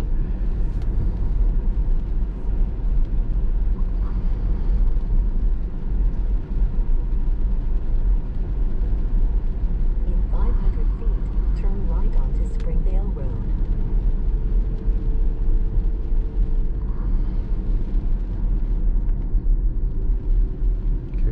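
Steady low road rumble and tyre noise heard inside the cabin of a Tesla Model S Plaid driving on a wet road in the rain. A faint steady tone sits over it in the second half.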